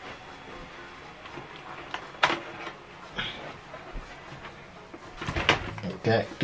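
Quiet room tone broken by a few faint clicks and one sharp click about two seconds in. Near the end comes a short cluster of handling knocks as a USB cable is taken hold of at the laptop to be unplugged.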